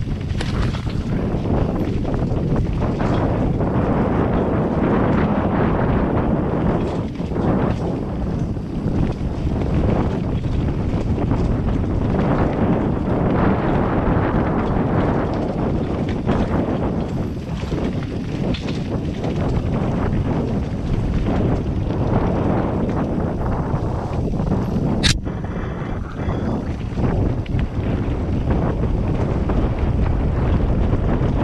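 Wind rushing over a helmet-mounted camera's microphone, mixed with the rumble and rattle of a Scott Gambler downhill mountain bike's tyres and frame over rocky, leaf-covered singletrack. One sharp clack late on.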